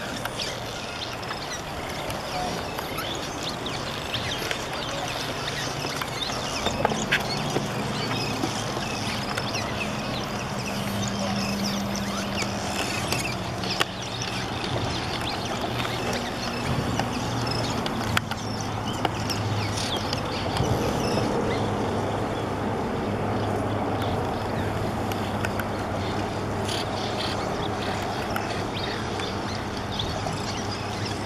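A large cliff swallow colony calling continuously: a dense chatter of many short overlapping calls. A low steady hum sits underneath from about seven seconds in.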